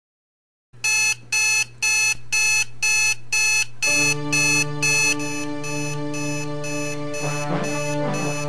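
Digital alarm clock going off: loud, high electronic beeps in rapid pulses, about two a second, starting just under a second in and stopping about five seconds in. Music with sustained tones comes in about four seconds in and carries on.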